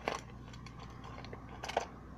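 Hands handling the small packaging of a necklace box: a few short clicks and rustles, once at the start and again near the end, as it is worked at to get it open.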